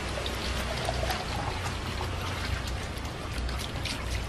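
Liquid pouring steadily from a plastic jug into a bottle, a continuous trickling stream.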